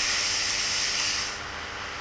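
Steady rushing hiss of water as a car ploughs through a flooded street in heavy rain, spray thrown up around it; it eases off about a second and a half in.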